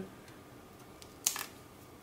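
Wire stripper's cutting jaws snipping through a thin insulated wire, the unused red lead of a PC power supply: one short, sharp snip a little over a second in.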